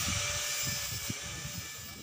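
Yamaha 125ZR two-stroke single-cylinder engine idling through a custom stainless exhaust pipe, with an uneven low pulsing and hiss. It fades steadily quieter.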